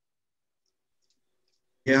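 Near silence with a few faint clicks.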